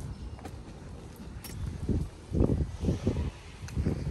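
Footsteps on a hard outdoor walkway, a few steps about two a second, starting about two seconds in, over a low rumble.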